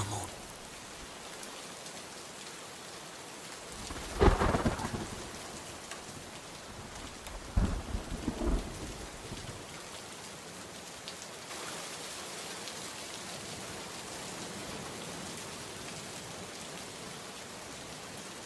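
Steady rain with thunder: one loud thunderclap about four seconds in, and two smaller rumbles around eight seconds.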